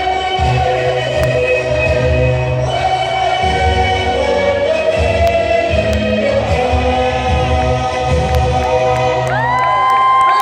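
Loud live concert music through a PA system, with sustained choir-like singing over heavy bass, and a crowd cheering. A long high whistle-like tone comes in near the end.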